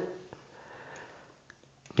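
A soft breath or sniff in a pause between sentences, with a few faint clicks.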